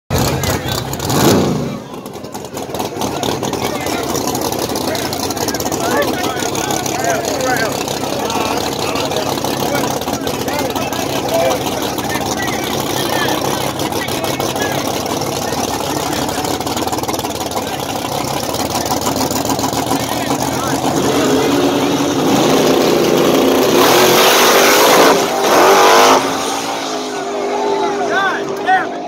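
Drag-racing cars' engines: a short loud rev about a second in, then a long steady rumble as the cars creep up to the line. About 24 seconds in comes a loud, full-throttle launch, the loudest part, which fades as the cars run off down the strip.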